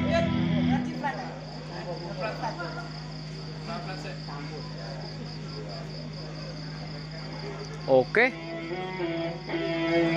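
A live band's sustained chord from electric guitar and keyboard stops about a second in. Then comes a low background of faint voices over a steady hum from the sound system, and near the end two short, loud rising glides.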